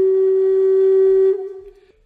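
Background music: a solo wind-instrument melody holding one long low note, which fades away about a second and a half in.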